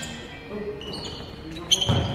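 A basketball bouncing on a hard gym floor during play, with a loud sharp knock near the end.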